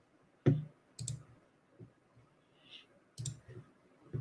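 Three sharp clicks, about half a second in, a second in and just past three seconds, with a few fainter ticks between: clicking at a computer desk.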